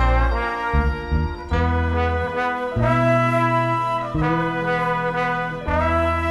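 Live band with a horn section, trumpet and trombone holding sustained chords over a bass line, moving to a new chord about every second and a half.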